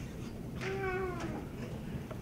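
A single short, high-pitched squeal of under a second, with a slightly falling pitch, heard over the low hum of a room full of people.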